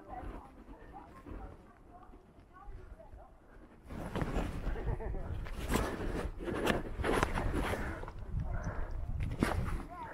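Water splashing and sloshing as a cutthroat trout is held in the water inside a rubber landing net, starting about four seconds in, with a few sharper splashes.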